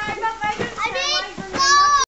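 Children calling out and shouting while playing, in high-pitched voices, with a loud call near the end.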